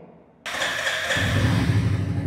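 Royal Enfield Classic 350's single-cylinder engine being started with the electric starter: a starter whir begins about half a second in, and just over a second in the engine catches and runs with a low, even pulse.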